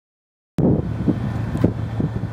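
Wind buffeting the microphone over the steady low hum of a ferry's engine, starting abruptly about half a second in.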